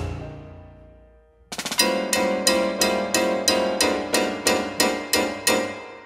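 Contemporary chamber music for pianos and percussion. A struck chord rings and dies away. About a second and a half in, a quick flurry of attacks starts a run of sharp strikes on the same pitched chord, about three a second, which fades out near the end.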